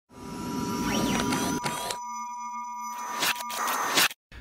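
Synthesized electronic intro sting. Steady sine-like tones have pitch sweeps gliding up and down across them in the first couple of seconds, then a held buzzy tone, then a swelling rush of noise near the end.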